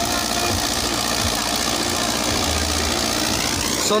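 Sonalika 60 tractor's diesel engine running steadily under load, driving an 8-foot Deshmesh superseeder as it works through rice stubble.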